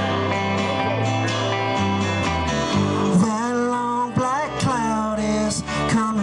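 Live country-rock band playing an instrumental break: strummed acoustic and electric guitars over bass and drums, with a lead line of bending, sliding notes in the middle.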